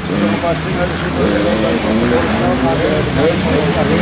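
Talking voices over a steady engine drone in the background.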